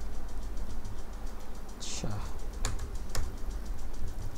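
Computer keyboard keystrokes: about three sharp key clicks in the second half, over a steady low hum.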